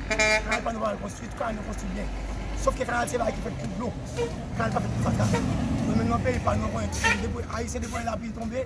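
A man speaking, with a short vehicle horn toot just after the start.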